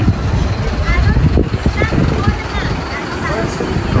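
City street ambience: a steady low rumble of vehicle engines and traffic, with faint voices of passers-by.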